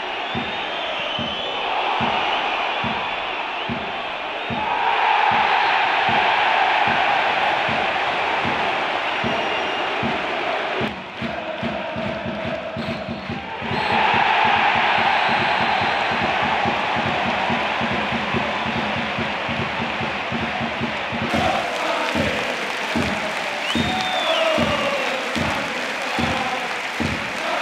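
Football stadium crowd roaring, with a loud surge about five seconds in and another after a brief lull halfway through, turning to chanting and singing near the end. A music track with a steady beat runs underneath.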